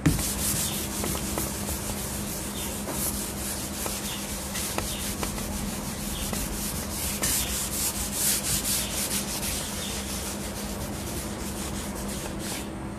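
Handwriting: a writing tip scratching across a writing surface in many short strokes with brief pauses between them.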